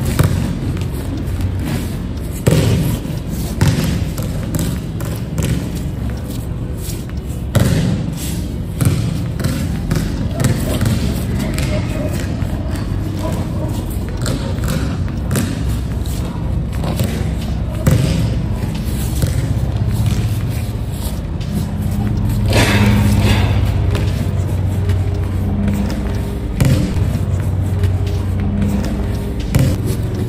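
A basketball bouncing on an indoor court floor during a game, heard as irregular thumps.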